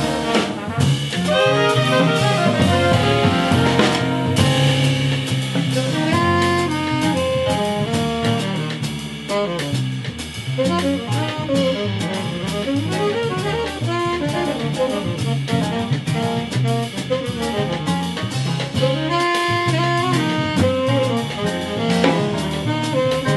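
Jazz sextet playing live: saxophones and trumpet carry moving melody lines over drum kit, piano and bass.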